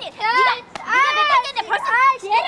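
High-pitched shouting voices of a woman and children, in short arching bursts with a brief pause just before halfway.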